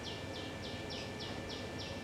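A small bird chirping in a quick, even series, about three short high chirps a second, faint, stopping just before the end.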